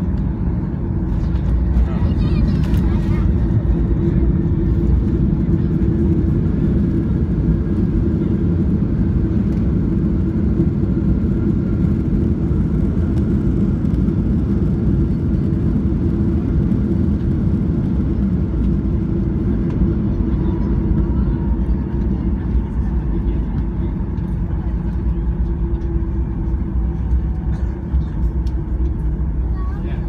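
Boeing 737-800 touching down and rolling out on the runway, heard from the cabin behind the wing: a loud, steady low rumble of wheels and engines that steps up with a brief clatter about two seconds in as the wheels meet the runway, and holds through the rollout with the ground spoilers deployed.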